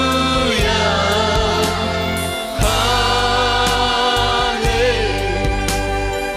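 Choir singing a Tamil gospel worship song with instrumental backing: held sung notes over a steady bass, with regular percussive strokes.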